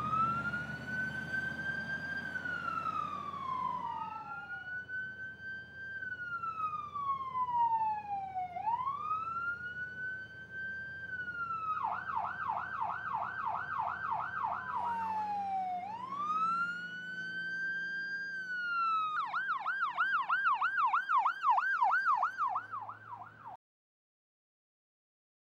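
Ambulance siren sounding. It alternates between a slow wail that rises and falls every few seconds and two spells of a fast yelp, over a faint low vehicle rumble. It cuts off suddenly near the end.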